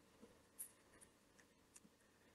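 Near silence, with a few faint ticks of a stylus writing on a tablet screen.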